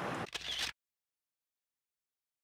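Faint outdoor background noise with a couple of soft clicks, which cuts off abruptly under a second in, followed by complete silence.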